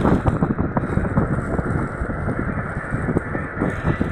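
Clear plastic wrapping crinkling and rustling as it is handled close to the microphone, a quick run of irregular crackles.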